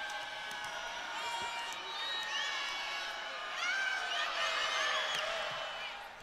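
Indoor volleyball arena crowd noise: voices blend with many short, high-pitched squeaks and chirps that rise and fall, busiest about four to five seconds in.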